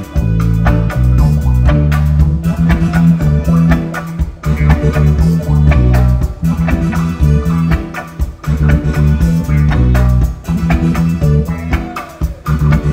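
Live reggae band playing an instrumental passage without vocals, carried by a heavy, repeating bass guitar line with drum kit and guitar.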